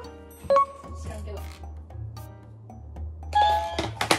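Background music with a steady bass line, and a single bright chime, like a doorbell ding, about half a second in that rings on briefly.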